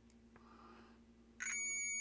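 ProsKit digital multimeter's continuity beeper sounding a steady high-pitched beep that starts abruptly about a second and a half in and holds. The beep marks continuity between the outer two wires of the toroid winding: a closed circuit, showing the winding's wire pairs are not crossed.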